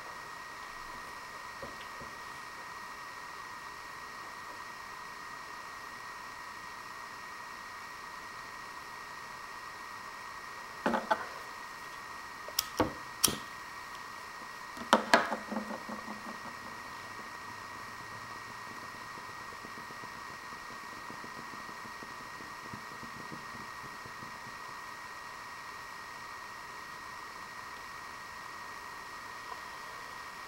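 Steady faint hiss with a thin constant high whine (room tone), broken by a few short knocks and clicks around the middle: one knock a little over a third of the way in, two sharp clicks shortly after, and another knock near halfway.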